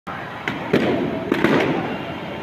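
Five sharp cracks over a steady background din: one about half a second in, another a quarter second later, then three in quick succession about a second and a half in.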